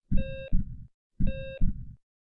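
Heartbeat sound effect: a low lub-dub double thump, each paired with a short heart-monitor beep, twice about a second apart.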